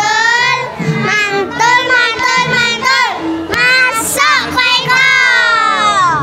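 A group of children singing together in unison, with long held notes, ending on a falling note near the end.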